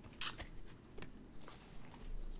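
A deck of cards and its small box handled on a table: a short, sharp rustle about a quarter second in, then two fainter brief taps.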